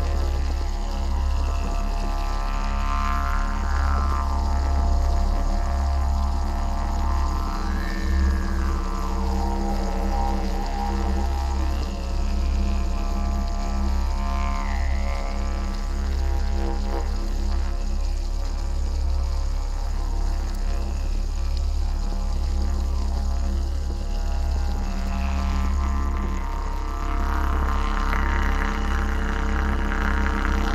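Background music built on a steady low drone, its overtones slowly swelling and sweeping a few times.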